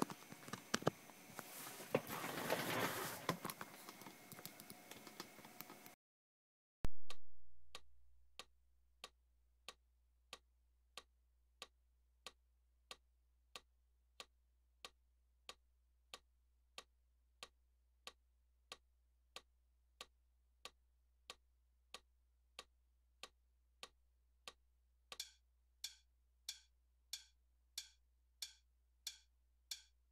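Metronome ticking steadily at about 94 beats a minute, after a few seconds of rustling handling noise and a single thump that dies away about seven seconds in; over the last five seconds the ticks are louder and ring more brightly.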